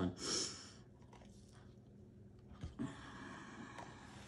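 A short breathy rush right at the start, then faint handling noise with a few light ticks and taps as a plastic cup of acrylic paint is turned over on the work table.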